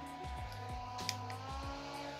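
Small handheld battery fan running with a steady motor whine, over background music with a bass line.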